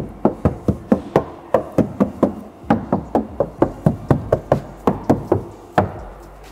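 Knuckles knocking rapidly on the body of a Moskvich 6 sedan, about five knocks a second, moving over the door frame, pillar and lower door panel.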